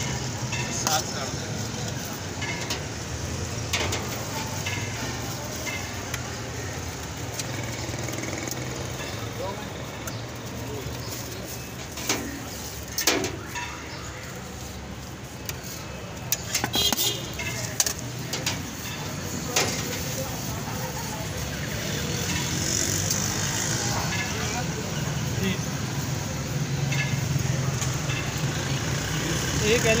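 Busy roadside street ambience: steady traffic noise with a low hum and background voices, crossed now and then by short sharp clicks and clinks from the serving at the stall.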